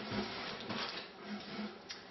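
Paper packing rustling quietly as a paper-wrapped pottery piece is lowered upright into a cardboard carton, with a light tap near the end.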